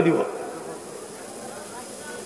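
A man's voice through a public-address system ends a word with a short fading echo. A pause follows, filled only with faint, steady background hiss from the amplified sound system.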